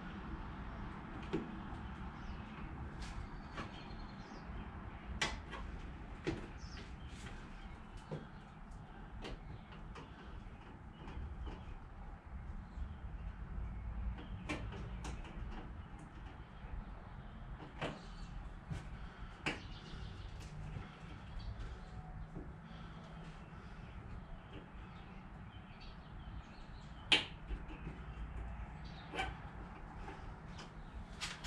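Scattered light clicks and knocks from hands working on the fittings under a car's raised trunk lid while changing the licence-plate lights, over a low steady background rumble; the sharpest click comes near the end.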